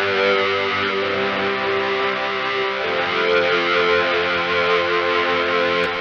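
Arturia Farfisa V software combo organ playing its Crunch Lead preset: held, overdriven organ notes, with the notes changing about halfway through.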